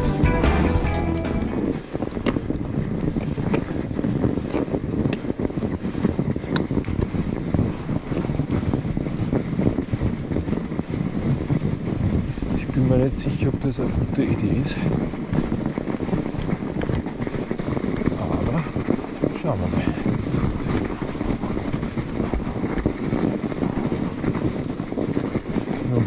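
Background music ends within the first two seconds. After that comes the riding noise of a mountain bike on a snowy trail: wind buffeting the microphone over the rumble of the tyres rolling through snow, with frequent small clicks and rattles from the bike.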